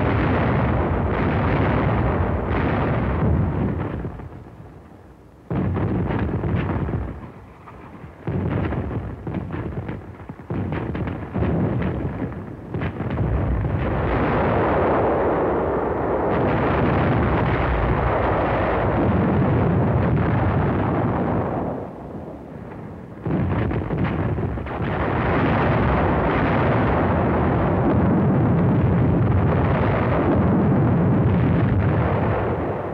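Howitzers firing in an artillery barrage: heavy blasts that start suddenly and fall away in a long rumble. The firing comes closer together until it runs nearly continuous.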